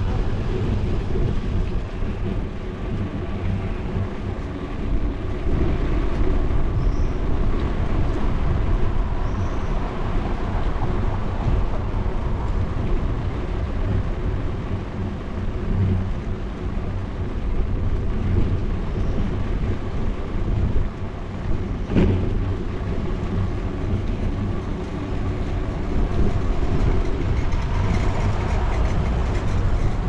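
Steady low rumble of a bicycle ride over sidewalk paving: wind on the action camera's microphone mixed with tyre and frame vibration. One sharp knock about two-thirds of the way through, as from a bump.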